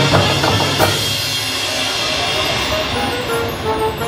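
Marching band playing: a few drum-line strokes in the first second, then a sustained full-band brass sound, with a stepping melody line coming in near the end.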